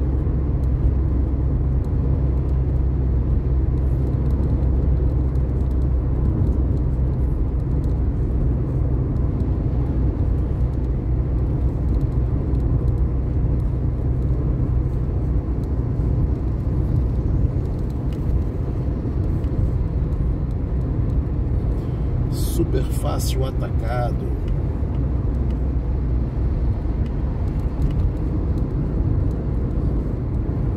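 Road and engine noise heard from inside a moving car at highway speed, a steady low rumble. About two-thirds of the way through there is a brief, sharper sound lasting a second or two.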